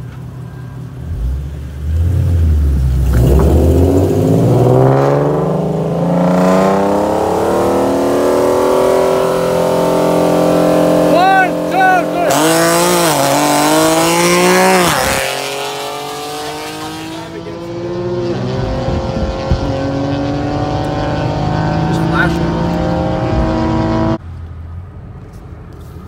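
Modified Nissan VQ37 V6 engines with long-tube headers and aftermarket exhausts pulling hard side by side at full throttle. The revs climb steadily for many seconds, with sudden drops at the gear shifts, then fall away as the cars lift off, leaving a lower, steadier engine and road noise.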